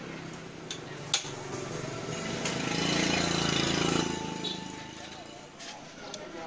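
Metal clicks and clinks from hand work on a Yamaha Yaz motorcycle's clutch with the side cover off, as the slipping clutch is taken apart; one sharp click comes about a second in. Indistinct voices rise louder through the middle.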